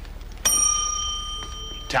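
Counter service bell struck once: a bright, clear ring that starts about half a second in and fades away over about a second and a half.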